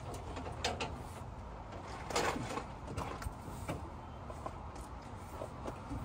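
Scattered light knocks and clicks of trailer-hitch hardware being handled, with a brief rustle about two seconds in.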